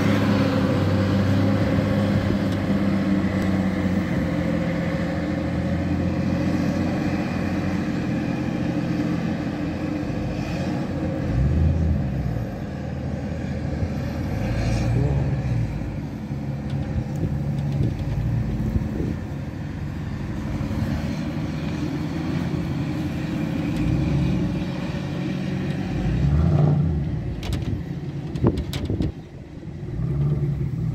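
A wheel loader's diesel engine running as it clears snow, its steady hum loudest in the first few seconds. After that, car engines move along the snowy street, with a few sharp clicks near the end.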